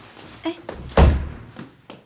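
A door slamming shut about a second in, a single heavy thud that dies away quickly, followed by a lighter knock near the end.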